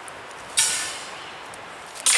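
Heavy galvanized-wire cattle panel clattering as it is shifted: one sudden metallic rattle about half a second in that fades within about half a second.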